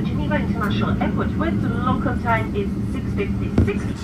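Talking that is not made out, over the steady low drone of a Boeing 777 airliner cabin on the ground.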